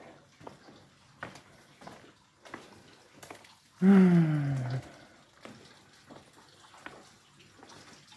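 Footsteps at a walking pace, faint clicks about every half second to second. About four seconds in, a man's long sighing "uh" that falls in pitch, the loudest sound here.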